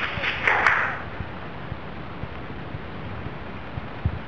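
Handling and movement noise from someone carrying the camera over rubble: scuffing and rustling with two short sharp clicks in the first second, then a steady low hiss with scattered faint ticks.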